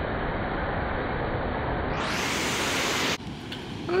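Wind buffeting the microphone on an open beach, mixed with surf: a steady rushing noise that stops abruptly about three seconds in, leaving quieter surf.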